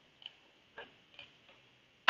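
Faint computer keyboard keystrokes: about four separate key clicks at irregular intervals.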